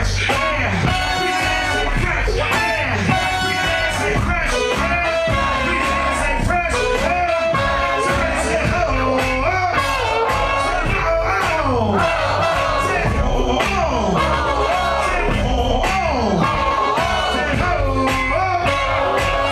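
A live hip-hop band playing a song through a venue PA: a steady drum beat and bass with melodic parts above, and a miked voice over the music.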